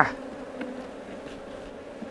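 Honey bees buzzing around an open hive, a steady hum; the colony is agitated and defensive, stinging the beekeeper.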